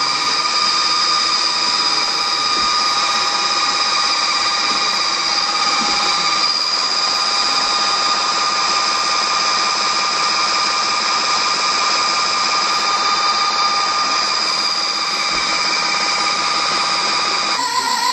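An electric drill spinning a mixing rod in a bucket of thick clay-wax emulsion and a multichannel peristaltic flow-dividing pump running at 335 RPM, together making a steady high-pitched machine whine.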